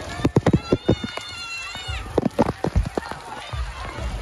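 Bare wet feet slapping on steps as children climb stairs, in two quick runs of footfalls. Between them a child gives a high, drawn-out squeal that drops off at the end.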